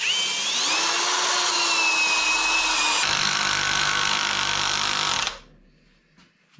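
Parkside Performance PSBSAP 20-Li A1 brushless cordless drill-driver, in low gear, driving a long carpentry screw into hardwood. The motor whine rises in pitch as it spins up, and the sound changes about three seconds in as the torque clutch starts to slip under the load. The tool stops suddenly about five seconds in.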